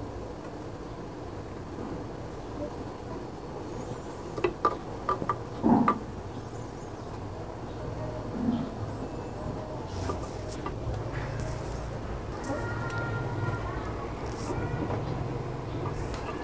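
Light hand-handling noise of wire leads being twisted together while splicing a replacement fan capacitor, with a few small clicks about four to six seconds in, over a steady low background hum.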